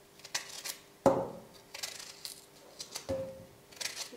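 Knife slicing a cucumber with pieces dropping into an empty stainless-steel mixer jar: a few light clicks, and two louder knocks with a short ring about one and three seconds in.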